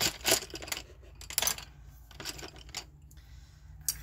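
Wooden colored pencils clicking and clattering against one another as they are handled and sorted through, a scattering of light clicks, the sharpest near the start and about a second and a half in.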